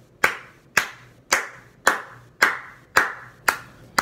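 Hand claps keeping a steady beat, about two a second, each a sharp crack with a short ringing tail.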